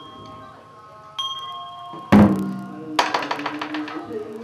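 Funeral prayer-rite percussion: a small bell rings once about a second in, then a loud low strike just after two seconds rings and dies away, followed by a fast run of sharp knocks near the end.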